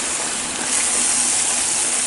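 Chicken breast fillets sizzling in hot oil in a nonstick frying pan, a steady hiss that gets a little brighter and louder shortly before halfway through.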